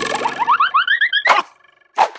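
Cartoon boing sound effect: a sharp hit, then a quick run of short rising glides that climb in pitch for about a second, ending in a whoosh.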